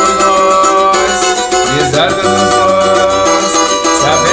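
Cavaquinho strummed in a samba/pagode rhythm, working through a chord progression in G, with steady low bass notes sounding underneath.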